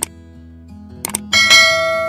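Subscribe-button animation sound effects over background music: two quick mouse clicks about a second in, then a bright notification-bell ding that rings on and fades slowly.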